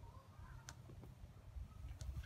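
Near silence: a faint low rumble of outdoor background noise, with a faint click about two-thirds of a second in.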